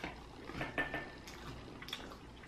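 Quiet chewing, with a few soft clicks spread through it.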